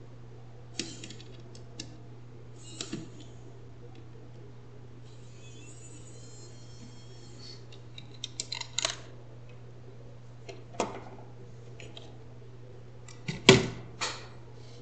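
Scattered clicks and light knocks from a screwdriver backing screws out of a laptop motherboard and from the plastic chassis being handled, with a brief high squeak in the middle. A sharp, louder knock near the end comes as the board is lifted out and set down. A faint steady low hum lies under it all.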